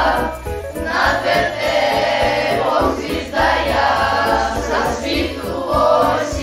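A choir singing a Christmas carol over musical accompaniment.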